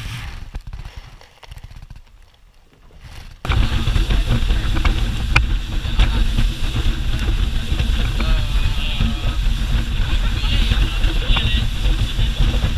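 Speedboat running fast over choppy water: a steady engine drone with wind and spray. It starts abruptly a few seconds in, after a quieter opening.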